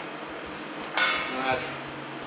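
A single sharp clink of a kitchen utensil against a container about a second in, as yogurt is scooped from a tray.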